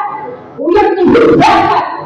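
A woman's voice amplified through a handheld microphone and loudspeakers, calling out one loud phrase that starts about half a second in, after the previous phrase fades.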